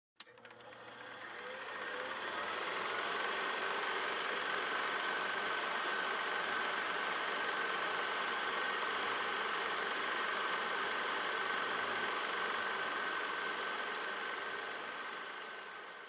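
A steady mechanical running noise with a thin steady whine, fading in over the first few seconds, holding level, then fading out near the end.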